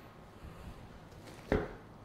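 Faint room noise from the spinning painting turntable, then one short, dull knock about one and a half seconds in as the spin is brought to a stop.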